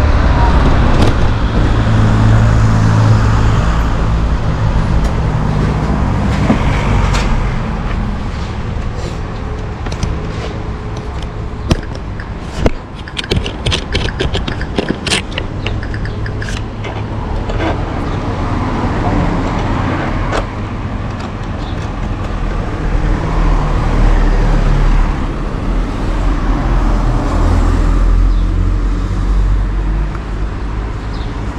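A motor scooter's small engine running at idle, a steady low hum, with street traffic around it. A run of sharp clicks and taps comes about halfway through.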